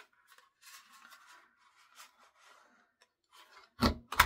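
Paper rustling and sliding faintly as a sheet of pink cardstock is positioned in a handheld corner rounder punch, with a few small clicks. Near the end comes a sharp, louder snap as the punch cuts the corner.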